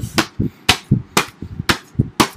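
A quick series of sharp knocks, about four a second, from two hard cases being clashed together by hand in a mock fight.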